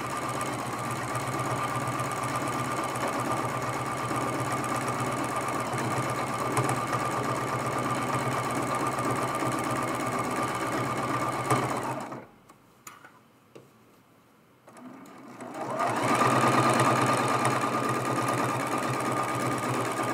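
Sewing machine running steadily as it free-motion quilts loops through a layered mug rug. It stops about twelve seconds in and starts up again a few seconds later.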